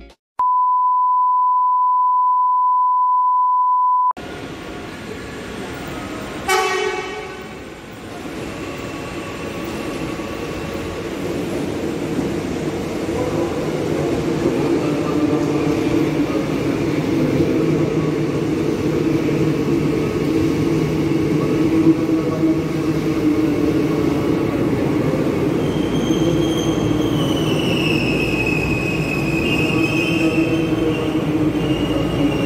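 A steady electronic beep tone for about four seconds, then a short train horn blast. Then electric passenger trains run through a station, a rumble building up and holding, with a high squeal sliding downward near the end.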